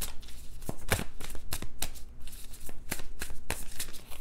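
A tarot deck being shuffled by hand: a quick, irregular run of sharp papery card snaps, several a second.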